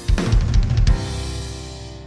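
Drum kit played in a deliberately overbusy fill of rapid snare, tom and kick hits over about the first second. It ends on a cymbal crash that rings out and fades over a held band chord.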